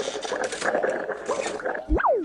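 Cartoon sound effect for a character rummaging inside a tuba's bell: a busy, jumbled noise full of quick wavering squeaks, with a low thump near the end.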